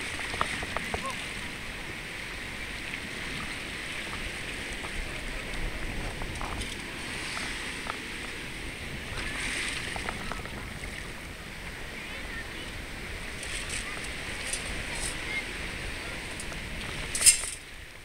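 Shallow beach surf washing steadily while a long-handled sand scoop is worked into the sand under the water to dig up a detector target, with a few light clicks and one sharp knock near the end.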